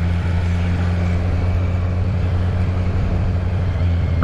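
Kawasaki Z900 inline-four engine running at a steady, moderate rpm while riding, with a deep, even exhaust note. The exhaust has its rear silencer tip removed, so it runs straight from the pre-muffler box.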